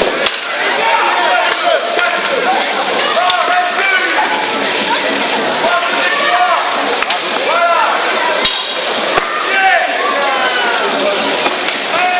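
Weapons striking plate armour and shields in a béhourd melee of armoured fighters, a few sharp blows standing out, over a crowd shouting and cheering throughout.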